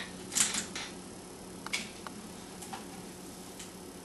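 Rubber mould being worked loose from a cast piece by hand: a short scuffing rustle about half a second in, then a few faint scattered clicks as the rubber is flexed and released.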